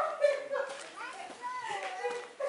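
Children's voices talking and calling out in high pitches.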